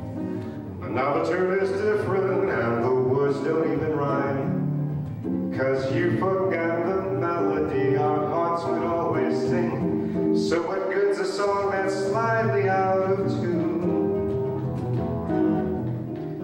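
Live jazz performance: a male vocalist singing a melody with a microphone, accompanied by an acoustic guitar, continuing steadily.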